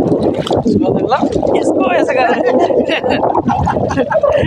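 Voices over water sloshing and splashing against stones as a hand swishes through the shallows.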